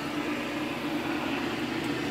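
An Arduino-controlled Adams pulsed motor running steadily at about 1600 RPM, its rotor spun by pulsed drive coils: a steady hum with one clear mid-pitched tone.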